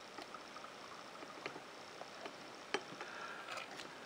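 Faint bubbling with small irregular pops from a Mabie Todd Swan leverless fountain pen's nib held in a bottle of ink. Air bubbles out through the nib as the turning-knob filler works the rubber sac: the sign of the pen filling. One sharper pop comes about three-quarters of the way through.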